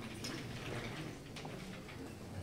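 Low background murmur of a hall with a few faint clicks and rustles.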